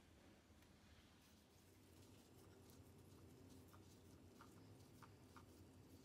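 Near silence: faint room tone with a few soft small ticks.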